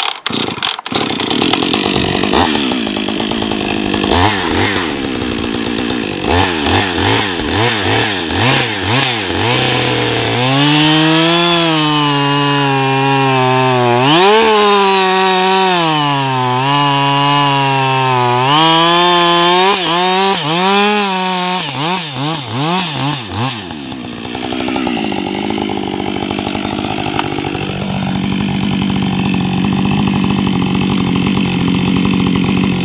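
Two-stroke chainsaw starting up and revving in short bursts, then running at full throttle through a log for about ten seconds, its pitch dipping twice as it loads in the cut. It then winds down and settles to a steady idle for the last several seconds.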